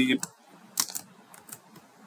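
A few separate computer-keyboard keystrokes as a name is typed into a text field.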